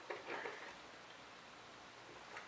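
A brief, faint drinking noise, a sip or swallow of water from a plastic cup, lasting about half a second near the start, then quiet room tone.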